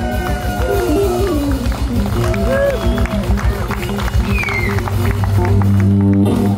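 Live one-man-band blues: an acoustic guitar riff with stepping notes and bends over a fast, steady drum beat and a droning low bass note, in the closing bars of a song.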